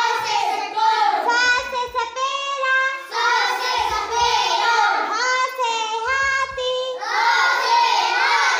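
A child singing a Hindi alphabet (varnamala) song over a backing track, with a low beat about every two and a half seconds.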